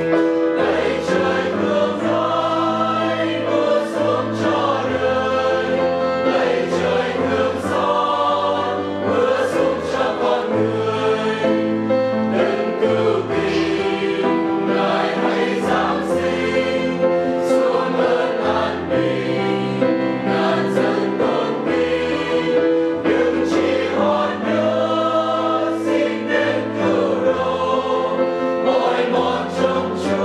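A mixed choir of men's and women's voices singing a Vietnamese hymn in several parts, with long held notes.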